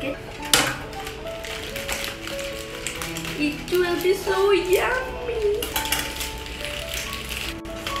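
Background music with sustained notes, a voice briefly about halfway through, and a few sharp crackles and clicks, the loudest about half a second in.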